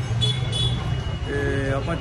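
Street traffic with a steady low engine hum, a brief high thin whine early on, and a short flat vehicle horn note near the end.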